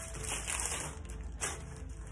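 Faint background music, with light rustling of a paper sheet and plastic crisp packets being handled on a table.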